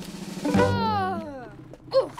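Cartoon sound effects: a short drum-roll rattle, then a long tone sliding downward in pitch, with a brief sharp accent at the very end.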